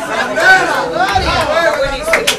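Speech only: voices talking that the recogniser did not write down.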